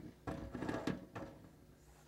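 A few faint knocks and clicks in the first second or so as a brass faucet valve is pushed up through the hole in a stainless steel sink deck and steadied by hand.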